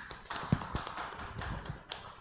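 A few people clapping briefly: a short patter of irregular hand claps that fades away just after the end.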